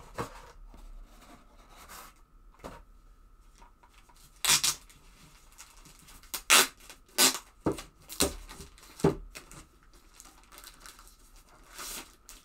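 Plastic wrapping being torn and peeled off a small boxed device by hand. Quiet handling at first, then about half a dozen sharp rips and crinkles from about four seconds in.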